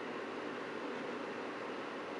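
Steady, even background hiss of room tone and recording noise, with no distinct events.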